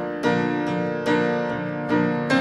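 Soundtrack music of piano, with struck notes or chords ringing and fading and a new one coming about every half second. No singing.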